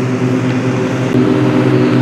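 Steady low mechanical hum of a motor or engine running at an even speed, with a slight change in its tone a little after a second in.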